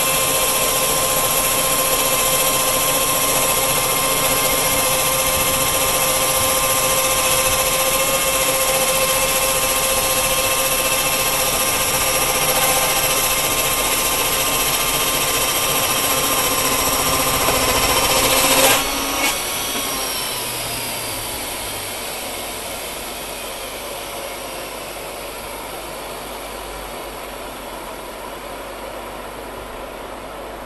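Sawmill running steadily with a high whine. About two-thirds of the way through there is a sharp clunk, the saw is switched off, and its pitch falls as it spins down.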